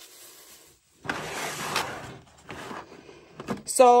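Protective plastic film being peeled off the lid of a clear plastic bead storage box: a crackly rustle starting about a second in and lasting about a second, followed by a fainter rustle and a few light plastic knocks near the end.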